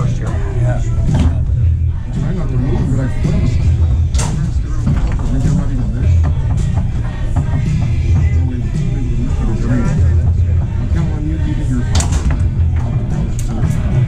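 Background music with a steady bass line and people talking in the room. It is broken by a few sharp knocks from the foosball table: one at the start, one about four seconds in and a pair about twelve seconds in.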